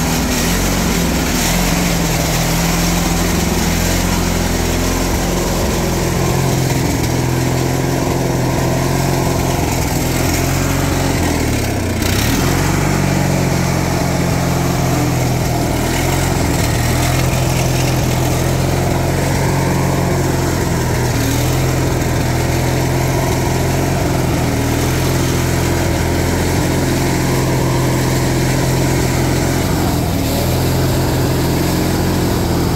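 18 hp twin-cylinder engine of an LT1650 riding lawn tractor running steadily just after a cold start, with the mower blades not yet engaged. The engine note dips briefly about twelve seconds in.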